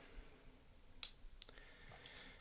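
Quiet room tone with one sharp click about a second in, followed by a couple of fainter ticks.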